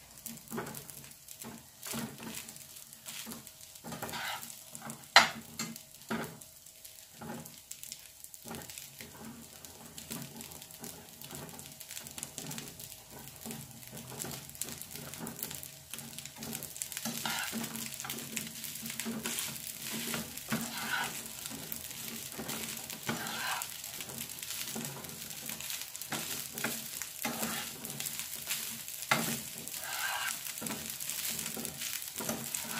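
Rice frying in a frying pan on a gas hob, stirred and scraped with a spatula: a run of scrapes and taps, with one sharp knock about five seconds in. The sizzling grows louder in the second half.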